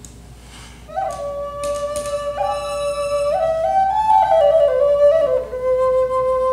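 Wooden Native American flute playing a slow, solo melody. It comes in about a second in with clean held notes, steps upward through a few pitches, then slides back down to settle on a long lower note near the end.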